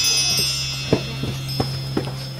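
A bright, shimmering chime tone slowly fading out over a steady low hum, with three short knocks: about a second in, a little later, and near the end.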